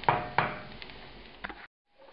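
A wooden spoon knocks twice against a non-stick skillet, with a few lighter taps, over the fading sizzle of diced onions frying in butter. The sound cuts off suddenly near the end.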